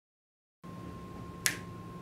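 Silence, then faint steady room hum with a thin high tone; about a second and a half in, a single sharp finger snap.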